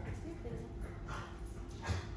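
A dog vocalizing briefly a few times, the loudest sound near the end.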